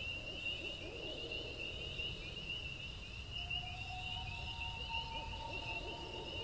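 Night-time forest ambience: insects chirring in a steady, fast, high trill over a low rumble. A long, held tone joins about three and a half seconds in.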